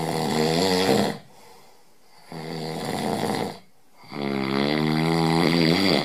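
A man snoring loudly: three long, rasping snores of one to two seconds each, with short breaks between them.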